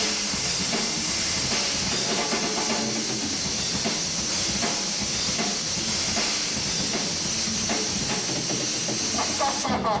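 Live heavy rock instrumental passage from bass guitar and drum kit, with a constant crashing cymbal wash that the recording turns into a loud hiss. A shouted vocal comes back in near the end.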